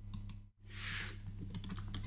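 Keystrokes on a computer keyboard: a quick, uneven run of light clicks as a word is typed.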